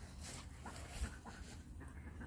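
Faint rustling and wind on the microphone, with a few soft, short animal calls around the middle.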